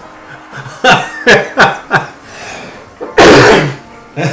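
A man laughing in short outbursts over swing-jazz music, then a loud, breathy burst about three seconds in.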